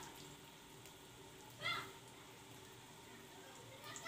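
Faint, steady sizzle of potato maakouda frying in hot oil. About halfway through there is one brief high-pitched sound.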